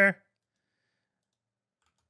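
The end of a spoken word, then near silence with a couple of faint mouse clicks near the end.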